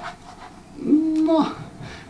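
Speech only: after a short pause, a man says a drawn-out "No" as he starts to answer.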